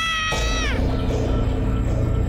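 A high, drawn-out wailing cry with a falling bend at its end dies away under a second in. A low rumbling drone of horror background music follows it.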